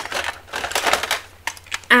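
A small metal watercolour tin being picked up and handled: a run of light, irregular clicks and rustling scrapes.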